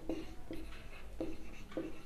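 Marker pen writing on a whiteboard: a few short, faint scratching strokes.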